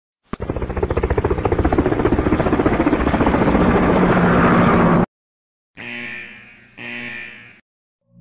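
A propeller-aircraft sound effect: a rapid throbbing engine sound that grows louder over about five seconds, then cuts off suddenly. Two short pitched tones follow.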